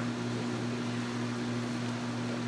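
Steady room hum and hiss: a constant low electrical hum with a second, higher hum tone above it, under an even wash of air-handling noise.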